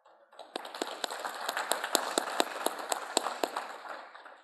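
Audience applauding, beginning a moment in, with many individual hand claps heard through it, and dying away near the end.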